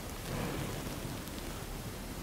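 Steady, even background hiss of room tone with no distinct event.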